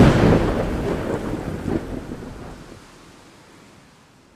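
A thunderclap that cracks loudly at the start, then rumbles and fades away over about three seconds.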